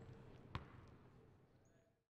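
Near silence with faint background fading out, broken by a single thump about half a second in: a basketball bouncing once.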